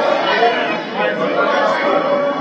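Many voices chattering at once in a parliament chamber, an overlapping murmur with no single speaker standing out.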